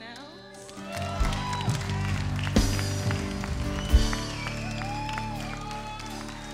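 Sustained church keyboard chords that swell up about a second in, with a few low thumps, the loudest near the four-second mark, and scattered voices calling out over the music.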